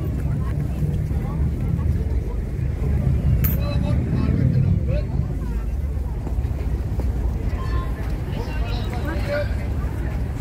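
Outdoor ambience: a steady low rumble with faint voices of people talking nearby, and a single sharp click about three and a half seconds in.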